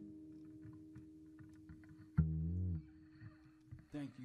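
The last guitar note of a live band ringing out and slowly fading. About two seconds in, a single low bass note slides up and back down in pitch for about half a second.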